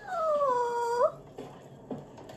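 A woman's high-pitched squealing vocal, held for about a second, sliding down in pitch and flicking up at the end.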